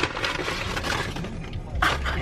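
Crackly rustling and scraping of a cardboard fry box and a plastic fork as fries are scooped up, with a sharp click at the start and a louder burst of noise near the end.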